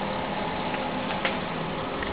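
Kroll KK30 wood-and-oil combination boiler running: a steady mechanical hum with a rushing noise, unchanging throughout.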